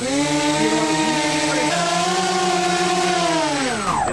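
Electric motors and propellers of an RC F-35 STOVL model running at throttle on a motor test, a steady whine over a low hum. The pitch climbs at the start, a second tone steps up a little under halfway through, and the pitch falls as the throttle comes back near the end.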